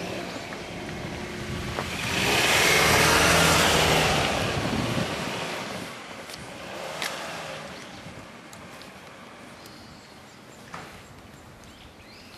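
A motor vehicle passing by: engine and road noise swell up about two seconds in, peak, and fade away by about six seconds. A couple of small sharp clicks follow.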